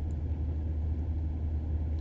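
Steady low rumble of a car driving along, heard from inside the cabin, with no change through the moment.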